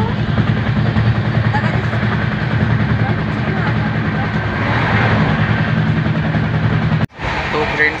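Express passenger train running, heard from inside a coach at an open window: a steady, loud rumble with a low hum and wind noise. The sound drops out abruptly about seven seconds in.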